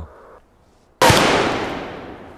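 A single pistol shot about a second in, sharp and loud, with a long tail fading over the following two seconds.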